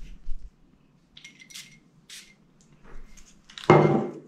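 Two short hissing sprays from a perfume bottle's atomizer, about a second and a half and two seconds in, among faint handling noises; a voice breaks in near the end.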